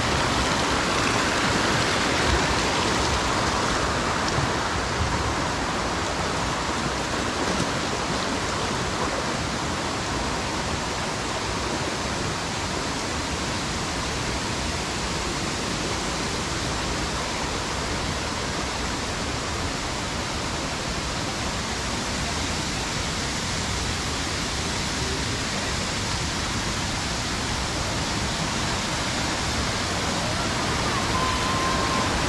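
Steady rush of a stream tumbling over small cascades in its channel, a little louder in the first few seconds and softest in the middle.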